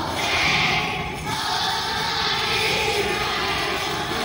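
A group of young children singing a Christmas song together.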